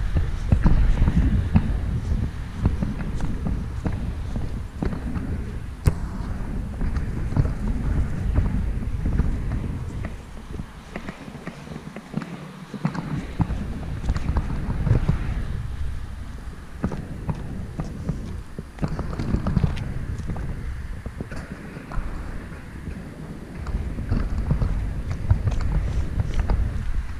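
Footsteps of someone walking across grass with the camera in hand, with handling bumps and a low rumble on the microphone. The rumble dips for a couple of seconds about halfway through.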